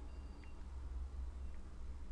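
Low steady electrical hum and room tone, with a faint high beep-like tone near the start and two small clicks about a second apart.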